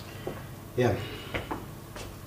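A few light knocks and clicks, like objects being handled on a desk, with a short spoken "yeah" in the middle.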